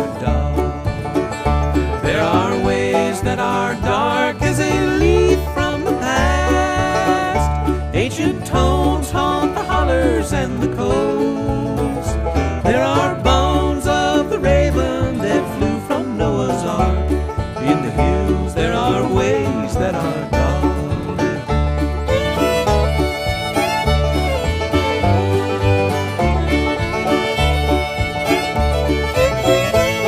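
Instrumental break in a bluegrass string-band song: banjo and fiddle lead over guitar and a steady bass beat, with no singing.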